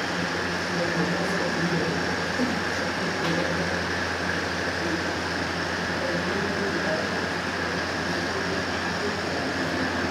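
Steady room noise: a continuous low hum with an even hiss over it, unchanging throughout.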